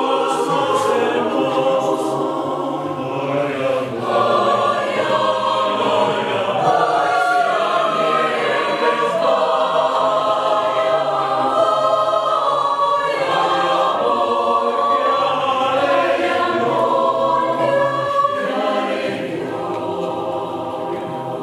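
Mixed choir of women's and men's voices singing unaccompanied in several parts, held steady at full voice.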